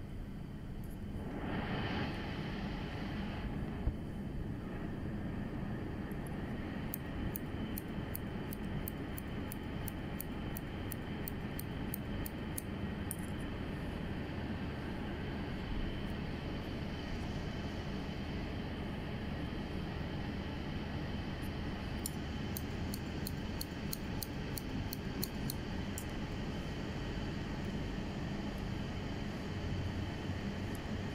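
Hair-cutting scissors snipping in two quick runs of light, crisp clicks over a steady background hum. About a second in there is a brief hiss of about two seconds.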